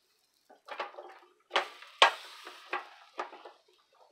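Brentwood electric tortilla maker's lid and plates clattering as a corn tortilla dough ball is pressed, with a series of sharp knocks, the loudest about halfway through. A brief hiss off the hot plates follows it and fades.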